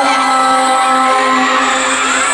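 Live pop music from a concert PA, with a held note carrying through over the band and crowd noise beneath.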